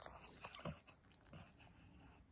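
A pug chewing with its mouth open: a few faint, soft clicks and wet mouth sounds.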